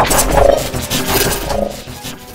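A loud rushing, rumbling transition sound effect that starts suddenly and fades away over about two seconds, over background music.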